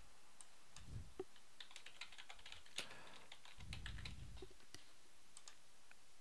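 Faint computer-keyboard typing: an irregular run of light key clicks, thickest in the middle, with a couple of soft low thumps.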